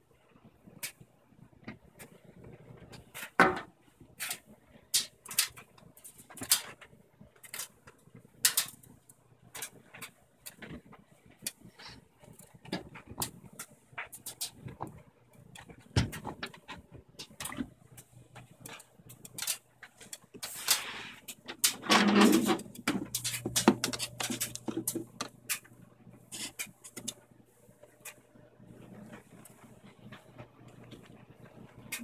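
Front-load washing machine working a load of bedding: scattered sharp clicks and knocks, a louder rush of sound about two-thirds of the way in, then a steady low hum.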